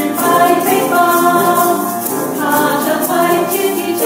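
Mixed choir singing a Chinese song with several voice parts, accompanied by hand shakers shaken in a steady rhythm.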